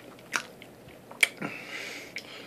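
A person chewing a mouthful of Popeyes apple cinnamon pie close to the microphone, with two sharp clicks, about a third of a second in and just past a second.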